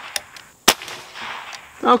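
A .22-caliber air rifle firing one pellet about two-thirds of a second in: a single sharp report with a short fading tail.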